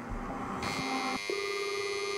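The song's music thins out and gives way to a steady electronic buzzing tone made of many fixed pitches. About a second in, it changes to a lower, stronger buzz, which holds steady.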